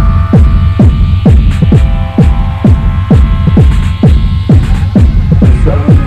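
A 1997 techno track: a kick drum on every beat, a little over two a second, each stroke dropping in pitch, over a heavy bass line and a held synth chord, with light hi-hats on top.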